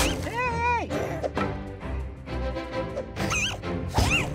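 Cartoon background music with a character's wordless vocal sounds: a drawn-out, bending cry about half a second in, and quick squeaky warbles near the end. A sharp knock comes right at the start.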